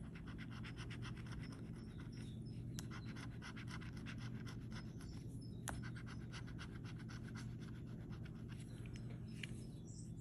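Plastic scratcher tool scraping the coating off a paper scratch-off lottery ticket in quick, repeated strokes.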